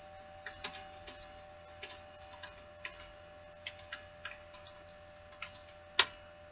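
Computer keyboard typing: irregularly spaced single keystroke clicks, with a sharper click at the very end, over a faint steady hum.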